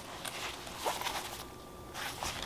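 Faint handling of a fabric fanny pack as it is lifted and held up, with soft rustling and a few light clicks.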